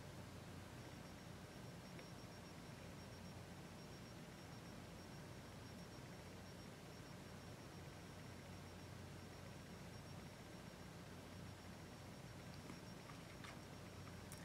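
Near silence: room tone with a faint steady low hum, and a couple of faint ticks near the end.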